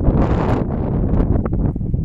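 Wind buffeting the microphone: a loud, unsteady low rumble, with a gust of hiss in the first half-second.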